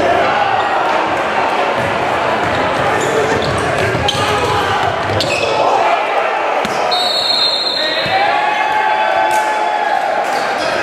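Live sound of a basketball game in a large gym: the ball bouncing on the hardwood court and players' and spectators' voices echoing in the hall. A high squeal comes in about seven seconds in.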